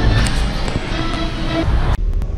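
Music playing in the background.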